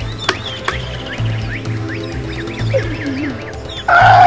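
Film soundtrack music with a pulsing low beat, sharp percussive clicks and quick chirping sounds above it. Right at the end a loud cry cuts in over the music.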